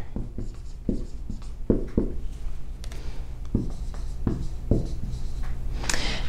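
Dry-erase marker writing on a whiteboard: a string of short, separate strokes as letters are drawn.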